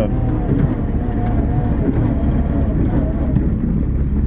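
Old military jeep's engine running steadily under way, heard from inside its open cab, with faint voices over it.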